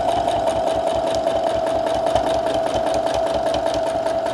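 Domestic sewing machine stitching steadily at speed with a free motion foot, feed dogs dropped for free motion quilting: an even motor whine over rapid, regular needle strokes.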